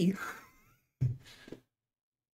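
A man's voice trails off at the end of a laughing word, then gives one short breathy exhale, like a sigh or soft laugh, about a second in.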